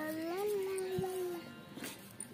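A young child's drawn-out sing-song vocalizing: one long held note that rises slightly in the middle and fades out about a second and a half in.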